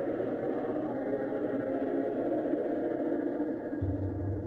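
Ambient space music: a dense, steady drone of many held tones, with a deep low note coming in near the end.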